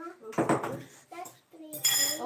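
Kitchenware clattering on the counter: a sharp knock about half a second in and a ringing clink of a bowl or utensil near the end.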